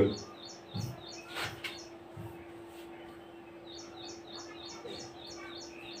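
A small bird chirping faintly in the background: a run of about eight short, evenly spaced high chirps, about three a second, beginning a little past the middle, over a steady faint hum.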